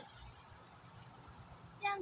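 Faint steady ambience of a shallow river, with a woman starting to speak near the end.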